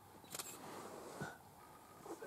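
A camera shutter clicks twice in quick succession about a third of a second in, then there is one brief lower sound just after a second.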